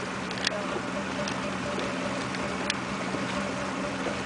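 Motorboat engine running steadily while the boat is under way, a low steady drone over an even rushing noise. Two brief sharp clicks sound, one about half a second in and one near three seconds.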